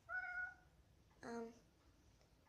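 A domestic cat meows once, a short call of about half a second.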